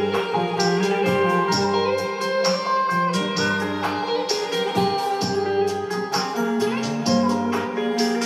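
Ensemble jam of electric saz, keyboard and fretless bass: quick plucked saz notes over held bass tones.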